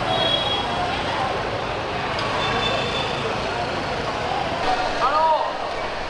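Busy street noise: motorbikes running past amid a crowd of people talking, with a brief louder call about five seconds in.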